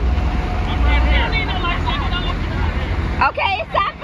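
Steady low rumble of wind on the phone's microphone aboard a moving catamaran, with the rush of the boat under way, and people's voices chattering behind it, louder about three seconds in.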